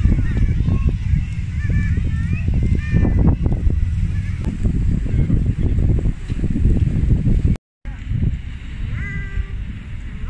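Birds calling in short rising and falling cries over a loud, steady low rumble of outdoor noise, the calls thickest in the first few seconds. The sound cuts out briefly about three-quarters of the way through.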